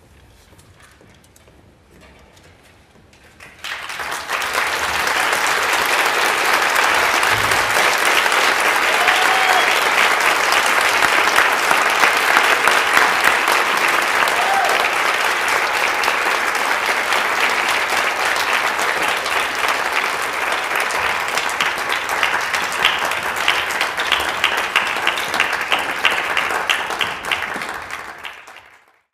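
Audience applause breaking out about three and a half seconds in after a hush, then running on thick and steady before dying away at the very end.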